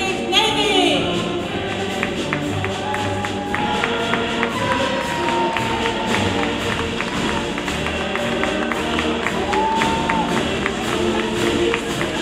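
Symphony orchestra and choir performing live, with held sung notes over the orchestra and a steady tapping percussion beat that enters about three and a half seconds in.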